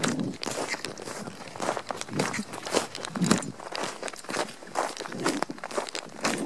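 Footsteps crunching on packed snow, people in ski boots walking uphill at about two steps a second.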